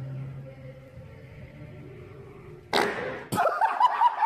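A sudden loud burst of noise about three seconds in, followed by men's voices yelling.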